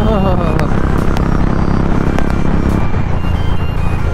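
Royal Enfield single-cylinder motorcycle engine running at steady cruising speed, heard from the rider's seat under heavy wind rumble on the microphone.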